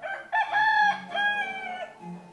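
A rooster crowing once: a single drawn-out cock-a-doodle-doo that starts a moment in and lasts about a second and a half.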